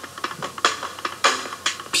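Electronic beat of sharp, clicking percussion hits, a few a second at uneven spacing, in a gap between the spoken vocal lines of the track.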